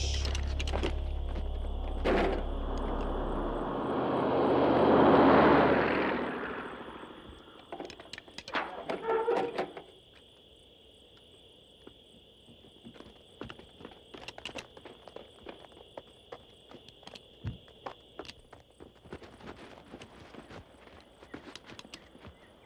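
Film soundtrack: music dying away in the first few seconds, then a loud rushing swell that peaks about five seconds in. After that come footsteps and rustling through brush, faint scattered knocks over a steady high tone.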